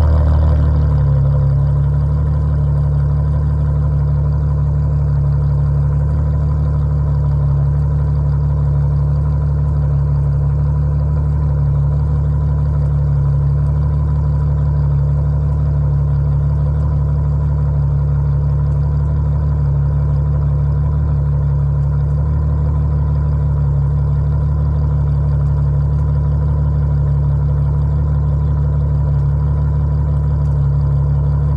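Ferrari GTC4Lusso's V12 with Capristo aftermarket exhaust idling steadily with the car standing still, settling down to an even idle in the first second or so.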